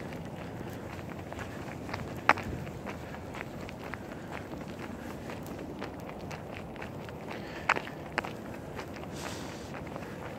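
Footsteps of a person walking on a paved road, over a steady low rustle, with a few sharper clicks: the loudest about two seconds in and two more near eight seconds.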